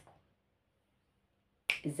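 A woman's voice: the end of a spoken phrase fades out, there is a pause of near silence, and near the end her speech starts again with a sharp click-like attack on the first word.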